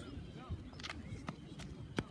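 Running footfalls of a high jumper's approach on a synthetic track, a sharp step about every third of a second that starts about a second in. Low background voices sit underneath.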